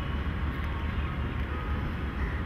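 A steady low rumble with a hiss of background noise, without words.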